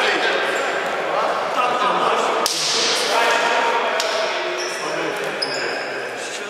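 Indistinct voices of players and spectators echoing in a large gymnasium. A single sharp knock comes about two and a half seconds in, and short high squeaks come near the end.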